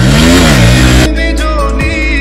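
Motorcycle's single-cylinder engine revved up and back down once, lasting about a second, over background music with singing.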